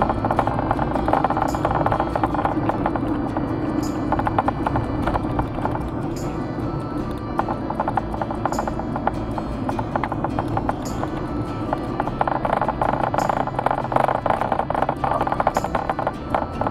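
Background music with a clip-clop-like percussion beat, a short high accent coming about every two and a half seconds. Under it is the steady low rumble of a car driving.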